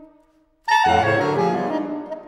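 Saxophone quartet playing classical concert music: the held tones drop away to a brief near-silent pause, then a sudden loud full chord enters about two-thirds of a second in, spanning deep bass to high treble, and is held while slowly fading.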